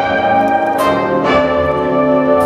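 Jazz big band playing a slow ballad: full, sustained horn chords from trumpets, trombones and saxophones over the rhythm section, with new chords struck about a second in.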